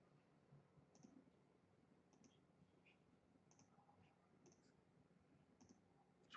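Faint computer mouse-button clicks, about one a second, as points are placed one by one; otherwise near silence.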